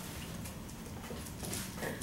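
Dry-erase marker writing on a whiteboard, making faint strokes and a light squeak near the end, over the low hum of a quiet classroom.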